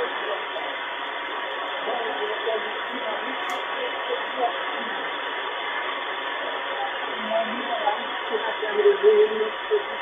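Canadian Coast Guard marine weather broadcast in French on 2749 kHz, played from the speaker of a DSP SDR receiver on a passive YouLoop loop antenna. The voice is faint and broken under steady radio hiss and a constant tone, and comes through a little more strongly near the end.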